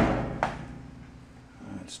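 Two hollow thuds about half a second apart as the plastic liner knocks against the stainless steel trash can, followed by a low hum that fades out over about a second and a half.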